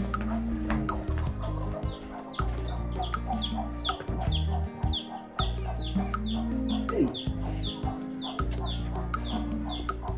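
Hens clucking over background music with a steady quick beat and a held low bass line.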